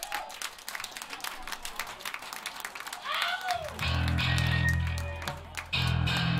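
Scattered clapping from a small crowd with a shout or two, then a few loud, sustained low notes on an amplified electric guitar between songs, starting a little under four seconds in.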